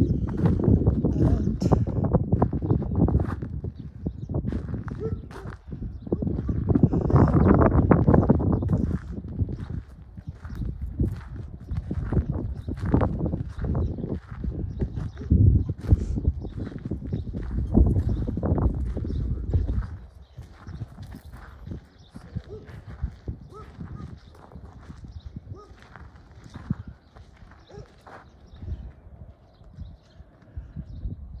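Footsteps crunching on dry dirt and gravel, with rough wind buffeting on the microphone; heavy for the first twenty seconds, then much fainter.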